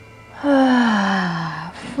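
A woman's long, audible sigh on the out-breath while holding a yoga pose: one voiced exhale, about a second long, its pitch falling steadily as it goes.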